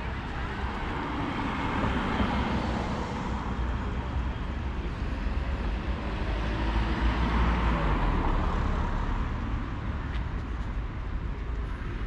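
Street traffic: cars passing on the road alongside, the sound swelling and fading twice, over a steady low rumble.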